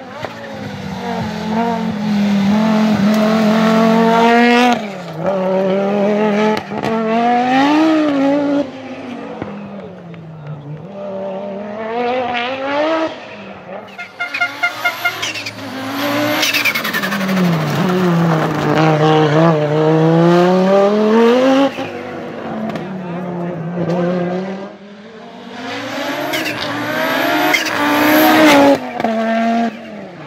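Audi Sport Quattro S1 Group B rally car's turbocharged five-cylinder engine revving hard on several passes, its pitch climbing through each gear and dropping at each shift. A quick string of sharp pops comes about halfway through.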